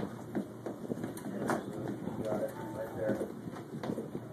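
Indistinct chatter of young children in a room, with a few scattered knocks and shuffles; no music is playing.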